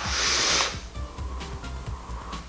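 A puff on a Vandy Vape Kylin M mesh-coil RTA: a loud rushing hiss of air and vapour that starts suddenly and lasts about half a second, followed by quieter background music with a steady beat.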